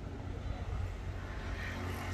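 A motor vehicle's engine running steadily, with a low rumble underneath.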